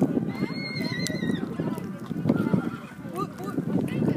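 A horse whinnying: one high, steady call of about a second that drops slightly as it ends, over rumbling wind noise on the microphone.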